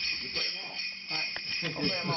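Soft talk over a steady, high jingling of bells.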